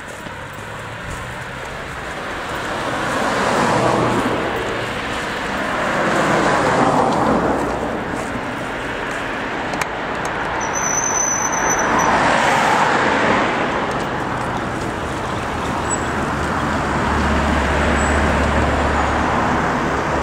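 Road traffic: several cars pass one after another, each one swelling and fading. Near the end a van passes with a deeper engine hum.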